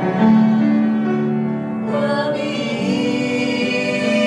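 Violin and upright piano playing together: held, slow-moving bowed violin notes over piano accompaniment.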